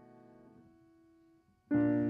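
Grand piano: a held chord dies away, most of its notes damped about half a second in, leaving one note that fades to near silence; then a new loud chord is struck near the end.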